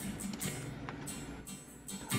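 Background music: a soft acoustic guitar playing.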